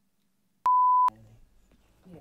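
A single steady electronic beep, one pure high tone lasting about half a second that switches on and off abruptly about two-thirds of a second in.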